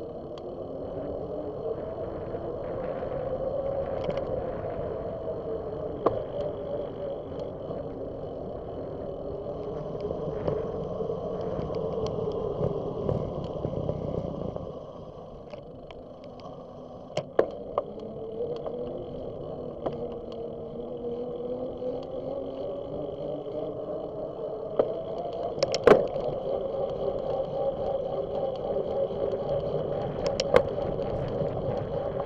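Bicycle riding noise picked up by a bike-mounted camera: tyres rolling on a paved path with wind on the microphone, the hum rising and falling with speed. A few sharp clicks from bumps or the bike's parts, the loudest near the end.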